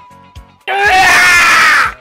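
A loud cartoon character's scream lasting just over a second. It starts about two-thirds of a second in and falls in pitch before cutting off, over background music with a steady beat.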